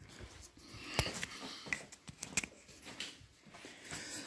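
Faint handling noise: soft rustling with scattered light clicks and taps as things are handled and a handheld camera is moved about, with one sharper click about a second in and a few quick clicks a little after two seconds.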